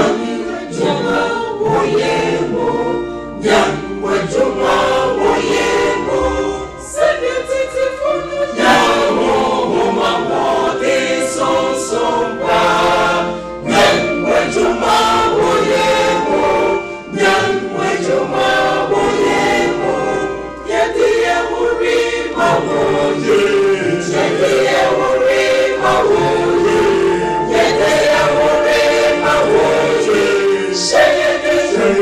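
A mixed church choir singing a gospel song in many voices, entering all at once at the start and then singing on at full strength.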